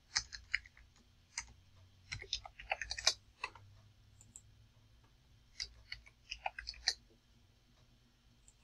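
Faint computer keyboard and mouse clicks in short bursts: a few taps at the start, a quick run of keystrokes about two to three and a half seconds in, and another run about six seconds in.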